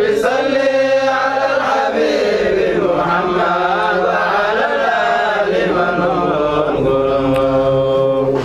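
A male voice chanting an Arabic devotional song in praise of the Prophet Muhammad, the kind of song sung at a mawlid, in long, wavering held notes.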